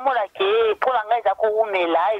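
A woman talking over a telephone line, her voice thin and narrow as heard through a phone connection.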